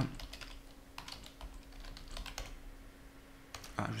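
Computer keyboard keys tapped in an irregular scatter of light clicks as a password is typed in.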